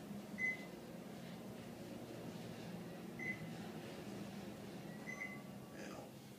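Elevator car travelling down with a steady low hum, and three short high electronic beeps, the elevator's floor-passing signal, the last shortly before it reaches the lobby.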